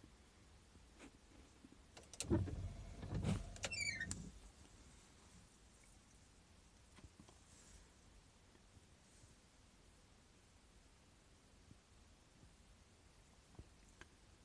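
Tree branches snapping and breaking under wind and snow load, heard faintly as a few scattered sharp cracks. A louder low rumble lasts about two seconds, starting about two seconds in.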